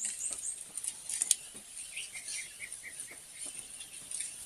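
A steady high buzz with scattered clicks and rustles, and a short run of about six quick chirps about two seconds in.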